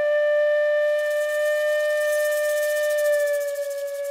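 A flute holding one long steady note after a short upward slide into it, fading slightly near the end; a soft high hiss joins about halfway through.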